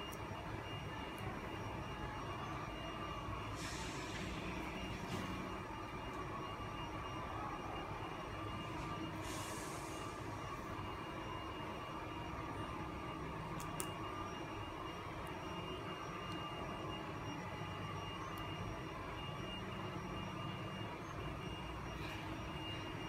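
Steady background hum of a workshop hall, with faint high tones running through it. Two brief soft rustles, around four and nine seconds in, and a faint click near the middle come from tape being handled and pressed onto the printer's frame.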